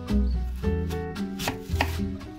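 A chef's knife cutting down through a peeled apple onto a wooden cutting board, two crisp cuts near the end. Background music plays throughout.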